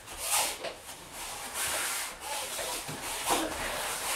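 Feet sliding and shuffling across the floor in a judo foot-sweep drill, a run of rubbing swishes.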